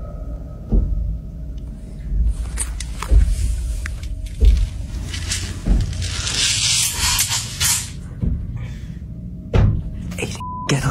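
Irregular dull knocks and thumps, about five of them spread over several seconds, with a hissing rustle in the middle: the strange sounds heard coming from a bedroom closet at night.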